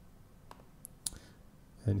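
A few faint computer mouse clicks, the sharpest about a second in.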